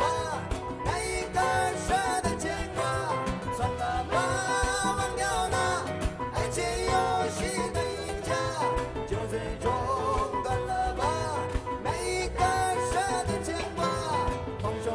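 A live band performing: a male singer over strummed acoustic guitar, a drum kit and a low bass line, with a steady beat.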